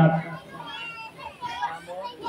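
A speaker's voice ends a phrase, and in the pause that follows, faint children's voices and chatter are heard in the background.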